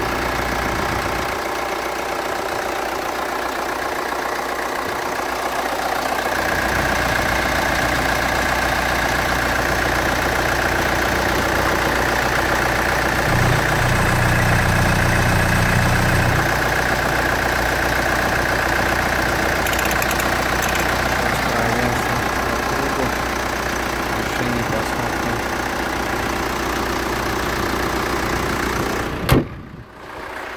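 Hyundai Santa Fe's four-cylinder common-rail diesel (CRDi 16V) idling steadily under an open hood, running well. Near the end the hood shuts with one loud bang, and the engine sounds muffled after it.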